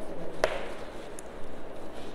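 Chalk writing on a blackboard: a single sharp tap of the chalk against the board about half a second in, over soft continuous scraping.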